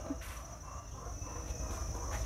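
Quiet outdoor background between spoken lines: a steady high-pitched insect drone over a faint low rumble, with a few faint ticks.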